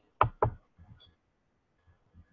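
Two sharp computer-mouse clicks about a quarter of a second apart, selecting a slide.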